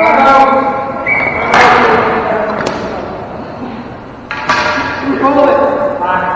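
Players' voices calling out in a large echoing gym, with two sharp impacts, about a second and a half and four seconds in, each ringing on in the hall's echo: ball-hockey sticks and ball striking during play.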